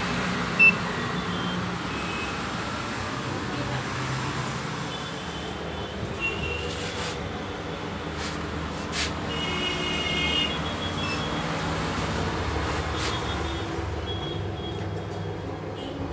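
Bonsdag passenger elevator in use: a steady low hum, a sharp click about a second in, a few further clicks, and short high electronic beeps around the middle.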